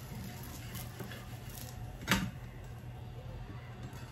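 One sharp click of a metal spatula against a coated tawa about two seconds in, over a low steady hum.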